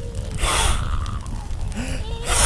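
A cartoon character's gasp: a short, breathy intake of breath about half a second in, over a steady low rumble.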